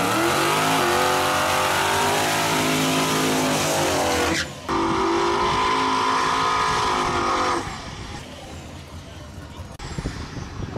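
Big-turbo Chevy pickup engine held at high, steady revs during a burnout, its rear tires spinning in a cloud of smoke. The sound breaks off briefly near the middle, comes back, then drops away about three-quarters of the way through, leaving a quieter wash of noise.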